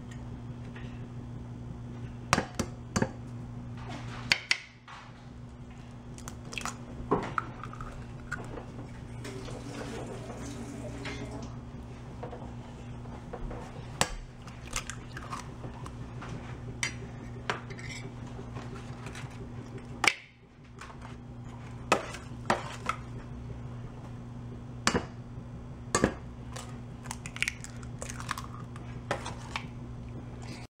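Eggs being cracked against a stainless steel mixing bowl: sharp knocks of shell on metal, several seconds apart, over a steady low hum.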